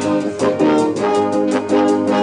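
Instrumental ending of a pop song: a brass section and band playing short repeated chords over drums.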